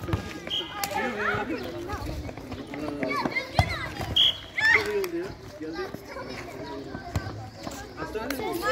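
Children shouting and calling to each other during a ball game, with a few dull thuds of the ball being kicked and two brief high-pitched calls.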